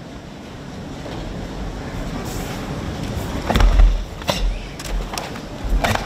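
A karate gi snapping sharply, with heavy foot stamps on the mat, as a kata's techniques are struck, over the steady murmur of a large hall. The strikes come in a burst of several about halfway through, the first being the loudest.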